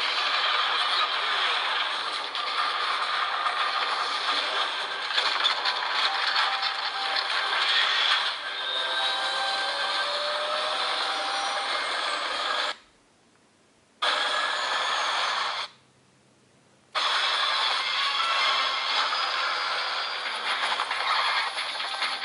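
Soundtracks of videos playing at once through a smartphone's small speaker, a dense, noisy mix with no bass. The sound cuts out twice, for about a second each, a little past halfway.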